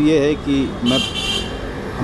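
A man speaking, with a short high-pitched toot about a second in.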